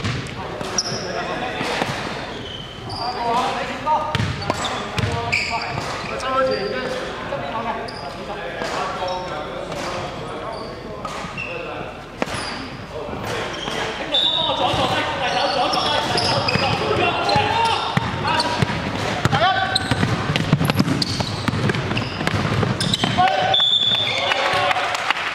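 Sound of a basketball game in a large gymnasium: players' voices calling out, with a ball bouncing on the hardwood floor, all echoing in the hall. It gets a little louder about halfway through.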